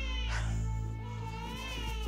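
A baby crying in long, wavering wails, two in a row, with background music underneath.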